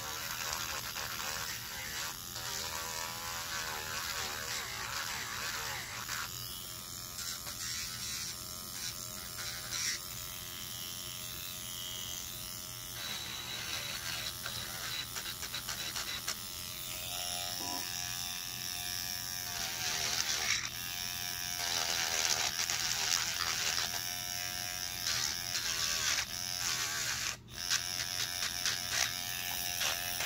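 Electric nail drill running continuously, its small motor buzzing as the bit grinds the sharp corners off cured UV-resin earrings. The grinding rises and falls in strength as the bit works the piece, strongest past the middle.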